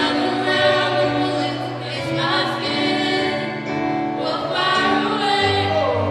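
A mixed group of student singers singing together in harmony, holding chords that change every second or two.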